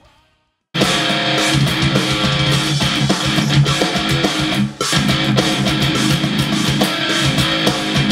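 Heavy metal electric guitar music that starts abruptly after a moment of silence under a second in, with a brief drop shortly before the end.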